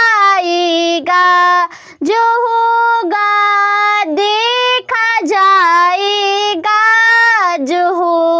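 A boy singing a Hindi devotional bhajan solo and unaccompanied, drawing out long held vowel notes of about a second each with sliding, ornamented turns between them.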